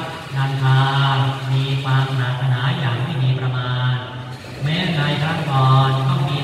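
Buddhist chanting in a low voice held on a near-steady pitch, with a short break for breath about four seconds in.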